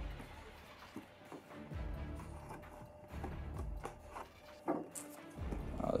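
Low, slow background music under plastic disc cases clicking and knocking as they are pushed and fitted into a cardboard box set by hand. The sharpest knock comes about three-quarters of the way in.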